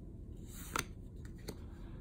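Paper trading cards sliding against each other as a small hand-held stack is flipped through: a soft swish about half a second in, with a couple of light clicks.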